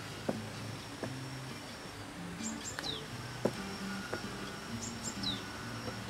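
Small birds calling outdoors: short high chirps, each group ending in a quick falling note, heard twice in the middle and near the end, over quiet background music.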